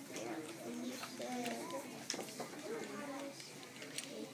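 Background chatter of several young children's voices in a classroom, talking quietly over one another, with a few light clicks and knocks.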